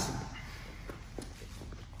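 Faint scuffing of bodies and shoes shifting on a wrestling mat, with a few light taps about a second in.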